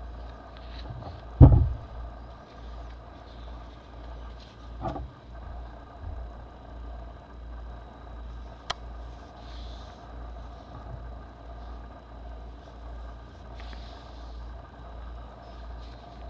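Handling noise over a steady low hum: a loud thump about a second and a half in, a softer one near five seconds, and a sharp click near nine seconds.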